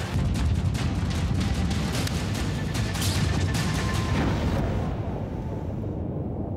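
Loud, steady, crackling roar of a jet-and-rocket-powered land speed record car at speed, deep and rumbling.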